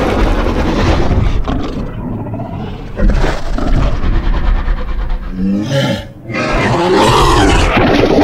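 Sound-designed dinosaur vocalisations over a low rumble: a short pitched call a little after five seconds, a brief lull, then a long loud roar through the last two seconds.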